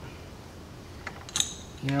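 A few sharp metallic clinks, a little past halfway, as the homemade steel battery tie-down and its L-shaped bolts are handled against the battery.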